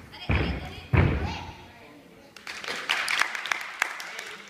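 A gymnast's feet striking a sprung gymnastics floor in a tumbling pass: three heavy thuds within the first second or so. From about two and a half seconds in, a run of sharp claps from onlookers.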